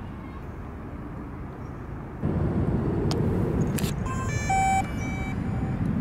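A steady low outdoor rumble that gets louder about two seconds in, then a short run of electronic beeps stepping between different pitches as the DJI Mavic Pro drone is powered up for its first flight.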